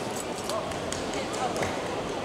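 Large-hall ambience: indistinct background voices with scattered sharp knocks and clicks, echoing in a gymnasium.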